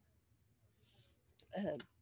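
A soft breath, a couple of light clicks and a hesitant woman's "um" in an otherwise quiet room.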